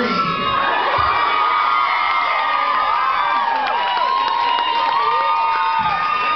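Audience screaming and cheering, with several long, high-pitched screams held and overlapping over the crowd noise.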